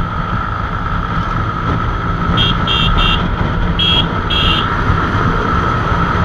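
Motorcycle riding at highway speed, with steady engine and road noise. A vehicle horn toots five short times in the middle.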